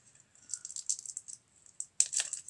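A paper-and-card record sleeve being handled and pulled open, giving a quiet run of short, scratchy crackles and rustles.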